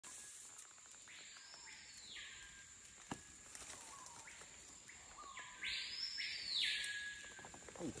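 Jungle insects calling: a rasping buzz that swells and fades three times, loudest about two-thirds of the way in, over a steady high-pitched whine. A single sharp click about three seconds in.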